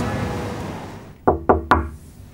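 Three quick knocks on a door, close together, each with a short ringing tail.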